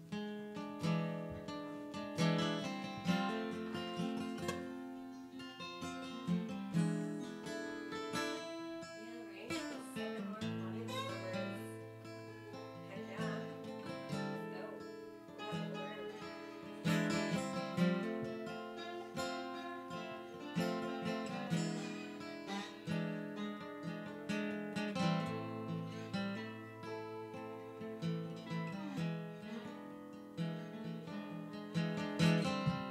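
Two acoustic guitars playing a song together with no vocals, with low bass notes held for several seconds at a time.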